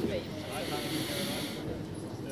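Indistinct voices chattering in a large hall, with a brief hiss lasting about a second in the middle.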